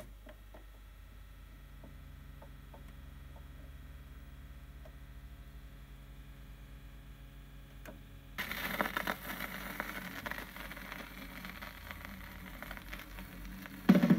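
Turntable playing a 7-inch vinyl single: a click as the tonearm is worked, then a faint steady hum with small ticks. About eight seconds in, the stylus sets down in the lead-in groove, and crackle and hiss from the record's surface take over.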